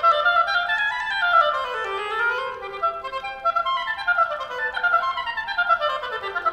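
Intro music played on a woodwind instrument, in quick scale runs that sweep up and down several times.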